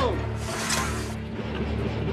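Film-score music with a low steady drone, and about half a second in a short mechanical rasp as a naval gun mount's autoloader moves a shell into place.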